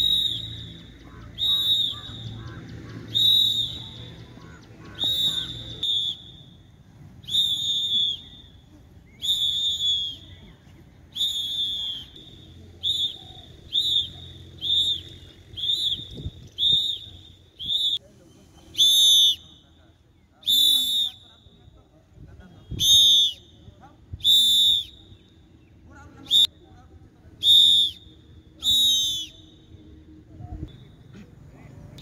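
A whistle blown in about twenty short, high blasts to pace the group's exercise repetitions. The blasts come roughly every one and a half to two seconds, quicker in the middle stretch, and louder and longer in the second half.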